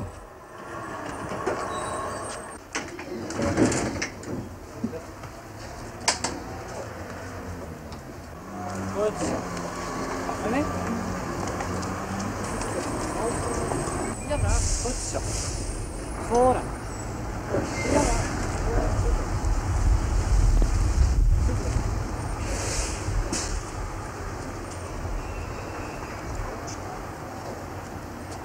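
City street sounds: a tram at a stop, indistinct voices and traffic, with a few sharp knocks early on and a heavy vehicle rumble through the second half.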